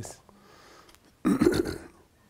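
A man coughing once, a short throaty burst a little past halfway, close to the microphone.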